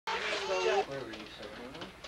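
A person's voice with a gliding, sing-song pitch, cutting in abruptly as the recording starts, followed by fainter voices.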